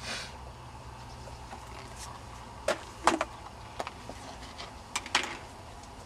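Beehive equipment being handled and set down: a handful of short, sharp knocks and clatters, irregularly spaced, over a low steady background.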